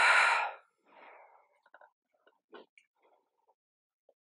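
A woman takes one loud, sharp breath at the start, then a softer breath about a second in, as she steps back into a lunge. A few faint taps from her feet on the yoga mat follow.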